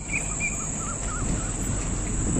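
Outdoor evening ambience: a bird gives a few short chirps and then a wavering, warbling call over a steady high-pitched drone of insects.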